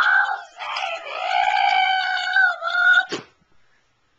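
A child's high-pitched voice crying out: a short cry, then a long held wailing cry of about two and a half seconds, ended about three seconds in by a knock as a plush toy bumps the camera.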